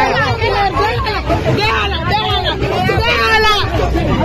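A crowd of people shouting and talking over one another at close range, loud and confused, as a fight breaks out. Near the end one voice rises into a sharper, higher shout.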